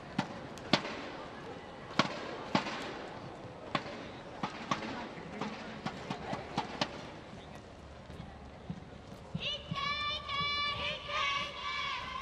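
Sharp, irregular clicks and knocks in an indoor badminton hall through the first seven seconds. From about nine and a half seconds, a run of high, wavering squeaks from court shoes on the badminton court mat.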